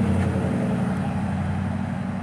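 Street traffic: a steady low engine hum from vehicles on the road, easing off slightly as a car drives out of range.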